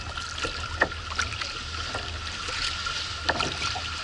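Kayak paddling: paddle blades dipping and pulling through the water, with a few sharper splashes about a second in and again after three seconds, over a steady wash of water along the hull.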